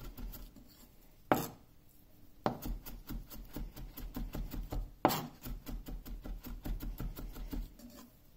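Chef's knife finely chopping onion on a wooden cutting board: rapid chops, several a second, in runs with short pauses and two louder knocks, one about a second in and one about five seconds in.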